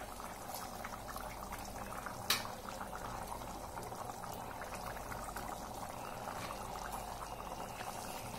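Spiced biryani liquid bubbling at the boil in an open stainless steel pressure cooker, a steady bubbling with small pops. A single sharp click comes about two seconds in.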